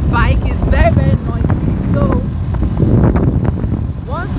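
Wind buffeting the phone's microphone, a loud, steady low rumble, under a woman's voice talking.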